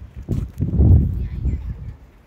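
Footsteps on a dirt path close to the microphone: dull low thuds about two a second, with a louder rumble near the middle.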